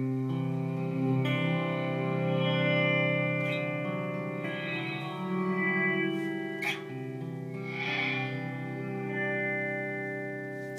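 Electric guitar played through the Eventide Space pedal's Blackhole reverb: a chord struck at the start, then further notes layered into a long, sustained reverb wash that keeps ringing and swelling.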